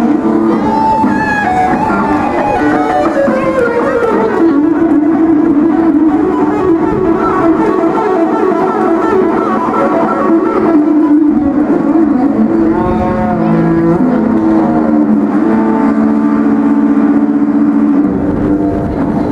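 Electric guitar played through an amplifier: a melodic lead line of held notes, some sliding or bending in pitch, with a falling run of notes in the first few seconds.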